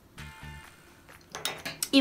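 Faint background music, then about one and a half seconds in a quick run of light clinks and clatter as makeup brushes and the palette are handled and set down.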